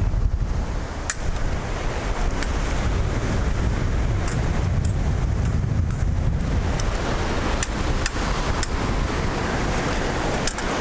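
Wind buffeting the microphone over the wash of surf breaking on the beach, a steady low rumble. A few short, sharp clicks come through, one about a second in and several in the last few seconds.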